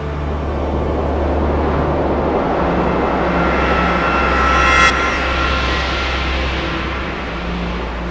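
Swelling rush of noise with a whine rising through it, peaking and cutting off sharply about five seconds in, then easing off over a steady low hum: an edited whoosh sound effect.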